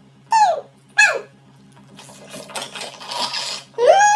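Two short, falling, squeaky cries in the first second and a half. Then about a second and a half of noisy slurping as a drink is sucked up through two plastic straws.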